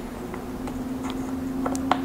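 A steady low hum that grows louder, with a few faint small clicks as the tips of a watch case-back opener are seated in the notches of a screw-on watch back.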